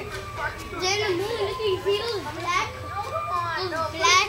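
Voices of several people talking and calling out over one another, not clearly worded, with a thin steady tone held underneath.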